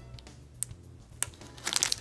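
Clear plastic packaging crinkling as a boxed pencil case is handled and turned over in its bag. A couple of soft isolated clicks come first, then a dense run of crackling starts about one and a half seconds in.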